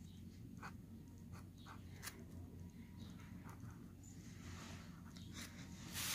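Pen scratching faintly on paper in short, separate strokes as numbers are written by hand, over a low steady hum.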